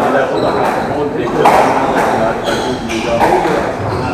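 Squash rally: the ball hit by rackets and striking the court walls, several sharp knocks a second or so apart, echoing in the court. Voices run underneath.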